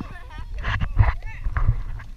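People's excited voices and laughter, over a low rumble of wind on the microphone that swells about halfway through.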